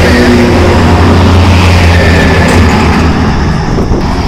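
A motor vehicle passing on the road close by: a loud, low engine rumble, strongest in the middle.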